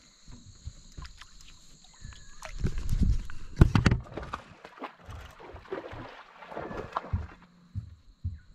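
Knocks and bumps against a small aluminium fishing boat, with a little water sloshing; the loudest thumps come about three to four seconds in. A steady high-pitched insect drone runs underneath and stops shortly before the end.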